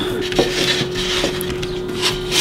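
Hands rubbing and smoothing soft baking soda and cornstarch clay, shaping it into a cone: a few soft rubbing strokes in a row.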